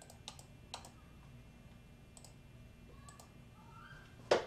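Faint, sharp clicks of a computer mouse: a quick run of three in the first second, one about two seconds in and a close pair after three seconds, over a low steady room hum.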